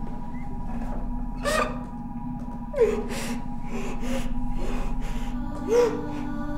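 A woman crying in short, gasping sobs, about six of them, the strongest near the start, around three seconds in and at the very end. Soft sustained background music runs underneath.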